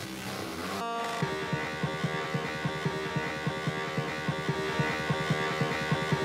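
Instrumental music between radio segments: held, droning tones with a fast, even pulsing low beat that comes in about a second in.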